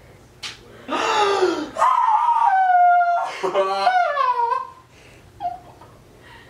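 A single sharp knock, then a person crying out in a long, high wail that falls slightly in pitch, followed by gasps and a laugh.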